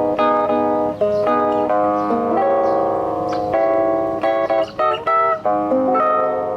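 Ten-string classical guitar played solo, fingerpicked notes and chords ringing over one another. A chord is held for about a second in the middle, then shorter, quicker notes follow with brief breaks near the end.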